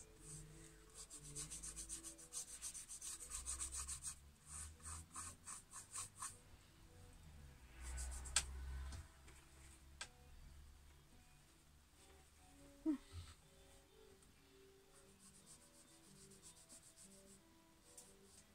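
Paintbrush bristles rubbing over a painted board in quick, repeated dry-brush strokes for the first six seconds or so. A sharp click follows about eight seconds in and another soon after.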